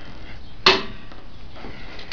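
A single sharp knock about two-thirds of a second in, ringing briefly, over low steady background noise.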